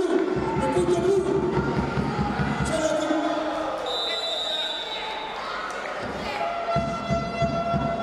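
Wrestling-arena noise: shouting voices over runs of rapid low thuds, with a short high whistle-like tone about four seconds in.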